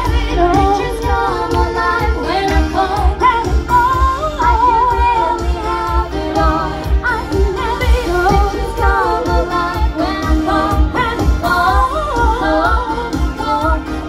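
Women singing a pop tune live into handheld microphones over loud amplified music with a steady beat.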